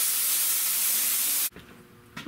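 Pneumatic spray glue gun with a plastic siphon cup spraying adhesive: a loud, steady hiss of compressed air for about a second and a half, then it cuts off suddenly. The gun is running at too much air pressure, with no regulator on the line.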